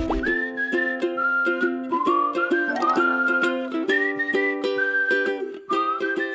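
Background music: a whistled tune over strummed plucked strings with a steady beat.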